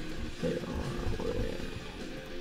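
A man's voice, drawn out and hesitant, over quiet background music.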